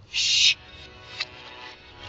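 Reversed cartoon soundtrack playing from a phone speaker: a short, loud, high-pitched burst in the first half-second, then quieter background music with a single sharp click a little after a second in.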